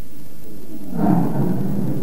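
A low, steady rumbling noise that swells louder about a second in.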